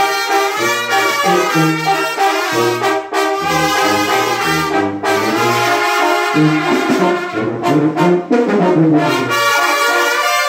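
A brass band playing: trumpet, saxophone and baritone horns carry the tune over a low brass bass line that moves in short stepped notes.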